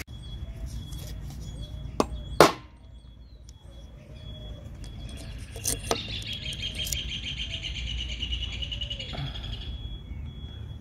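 Two sharp knocks of a hammer striking a steel number punch into a soft lead ingot, about two seconds in, a fraction of a second apart. From about halfway, a bird chirps rapidly for about four seconds.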